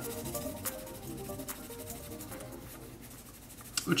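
Quiet background music with held notes, under the faint scratch of a graphite pencil shading on sketchbook paper.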